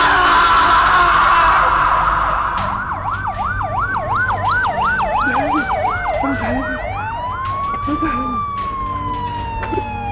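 A man screams in anguish for about two seconds. Then an ambulance siren starts: a fast warbling yelp, about three rises and falls a second, which near seven seconds in changes to a slow wail that rises and then falls away.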